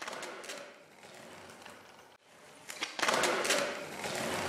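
Skateboard wheels rolling on a concrete floor, with scattered clicks and clacks from the board. The sound drops out briefly about two seconds in and comes back louder about three seconds in.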